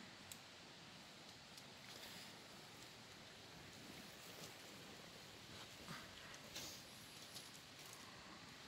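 Faint steady rush of a river in the background, with a few light clicks and rustles from tent poles and fabric being handled.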